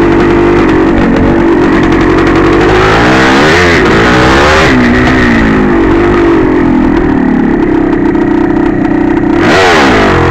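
1982 Yamaha IT465's 465 cc two-stroke single-cylinder engine running under throttle on a dirt trail. Its pitch drops and climbs again about three to five seconds in, and once more near the end, as the throttle is eased off and reopened.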